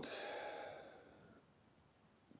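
A man's long breathy sigh, fading out over about a second and a half.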